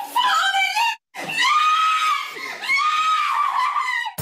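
Young boys screaming and wailing in high, drawn-out cries. The cries break off briefly about a second in and then resume.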